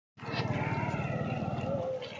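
A motor vehicle's engine running close by, a steady low rumble, with people's voices under it.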